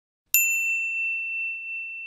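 A single bell-like ding sound effect, struck about a third of a second in, ringing one clear high tone with fainter overtones that fades away over about two seconds. It marks the notification bell being switched on in a subscribe animation.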